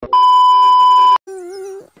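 A loud, steady 1 kHz bleep tone lasting about a second: the classic censor bleep dropped in as an edit effect. It is followed by a short, quieter wavering hum.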